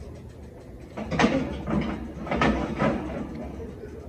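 Metal muffin tin scraping and clinking onto a wire oven rack as it is slid into the oven, with the rack rattling: a few sharp clatters from about a second in through the middle.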